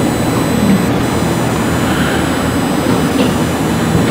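Steady rushing background noise with a low hum and faint, thin, high steady tones, unchanging throughout with no distinct events.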